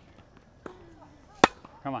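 A tennis ball struck by a racket: a faint knock, then one sharp, loud racket hit on the ball about a second and a half in.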